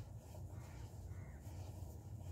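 A bird calling faintly twice over a steady low hum.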